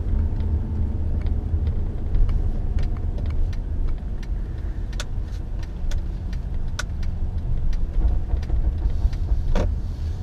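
A car driving, heard from inside the cabin: a steady low engine and road rumble, with a scattering of small sharp clicks and rattles, the clearest about halfway through and near the end.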